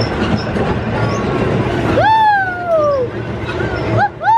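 Small park toy train rolling along its narrow track, a steady rumble and clatter of the carriages. About halfway through, a loud high call rises quickly and then slides down in pitch over about a second.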